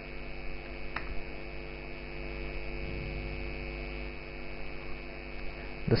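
Steady electrical mains hum on the recording, with one short key click about a second in.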